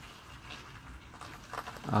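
Faint, steady patter of light rain, then a man's drawn-out hesitant 'um' near the end.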